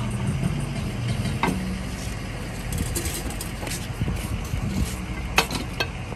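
A vehicle engine idling with a steady low hum, with a few sharp metal clicks from the wheel dolly being fitted under the tyre: one about a second and a half in and two close together near the end.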